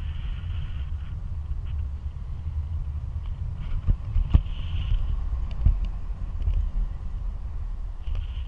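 Airflow of a paraglider in flight buffeting the camera microphone: a steady low wind rumble, with a couple of sharp knocks near the middle.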